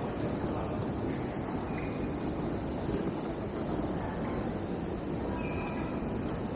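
Steady low ambient rumble with no distinct events, the kind of street or transit background heard while walking.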